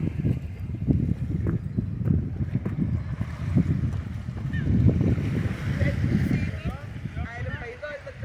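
Wind buffeting the camera's microphone in uneven gusts, heard as a low rumble. Faint distant voices come in near the end.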